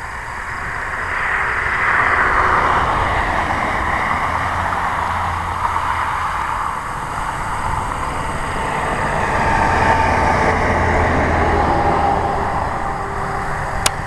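Road traffic passing close by: tyre and engine noise of cars that swells about two seconds in and again near the end, over a steady low hum.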